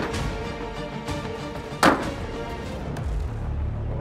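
Background music, with one sharp hit about two seconds in: a 3D-printed hammer striking the soft 3D-printed TPU pad of a high-striker hammer game.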